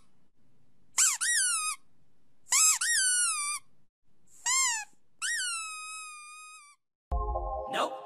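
Four high-pitched squeaks, each rising then falling in pitch, the last one trailing off longer. Near the end music begins with a brief low thump.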